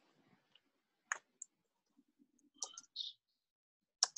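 Near silence broken by a few faint, short clicks: one about a second in, another just after, and a small cluster near the three-second mark.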